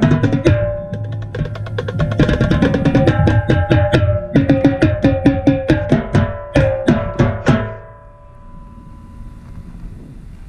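Marching tenor drums (quads with Evans heads) played right at the microphone: a fast, dense run of sharp, ringing strikes on the pitched drum heads that stops about eight seconds in.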